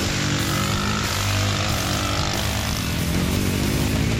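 A small off-road buggy's engine running under load as it drives through mud, with rock music playing underneath.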